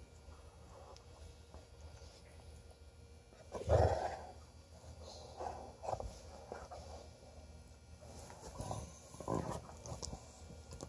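Two dogs play-wrestling, mouthing each other and giving a few short, low play growls; the loudest comes about four seconds in, with smaller ones near the middle and near the end.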